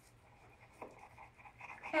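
Faint sawing and scraping of a dull kitchen knife working through a lime on a wooden cutting board, with a soft click about a second in; the blade is dull, so it saws rather than slicing cleanly.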